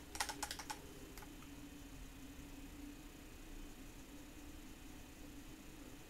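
A quick run of light clicks in the first second as the plastic eyeliner pencil is picked up and handled, then only a faint steady hum.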